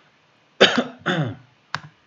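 A man coughing: two coughs in quick succession, then a short sharp sound near the end.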